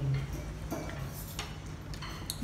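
A few light clicks of metal cutlery against plates, over a steady low background hum.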